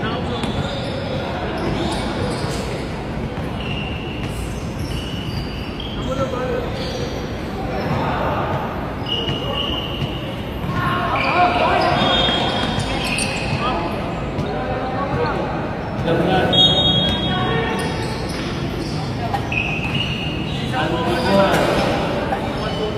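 A basketball game: a ball bouncing on the court amid players' and onlookers' indistinct voices calling out, with a few brief high-pitched squeaks.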